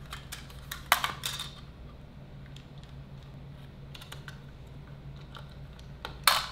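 Small clicks and taps of a 2.5-inch SSD being pressed into a metal laptop drive sled, with a sharper click about a second in, followed by a few faint scattered ticks.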